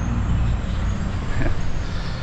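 Steady low rumble of street traffic, with motor-vehicle engines running.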